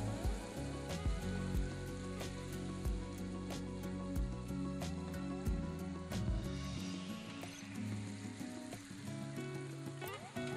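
Soft acoustic background music over the faint sizzle of tuna steaks frying in a pan of onion and tomato.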